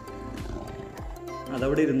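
A tiger's call from Google's AR tiger model, over calm electronic background music with a steady beat.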